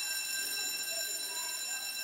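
Transition sound effect between podcast segments: a steady, shrill ringing made of many high tones sounding together over a faint hiss.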